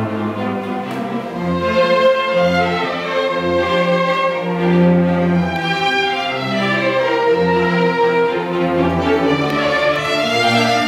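Youth string orchestra playing classical music: violins bowing over long, sustained low notes from the cellos and basses.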